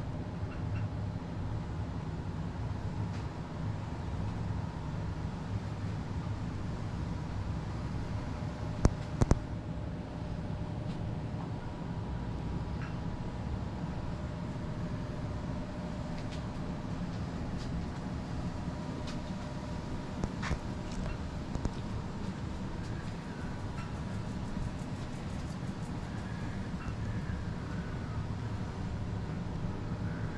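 Steady low mechanical hum carrying a few faint steady tones. Sharp clicks come twice in quick succession about nine seconds in, and again around twenty seconds in.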